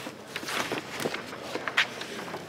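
Light handling noise: a handful of soft knocks and rustles, spaced irregularly.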